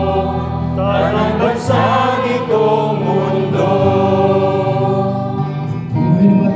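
A psalm being sung slowly in a church, with held sung notes over steady low sustained notes of accompaniment.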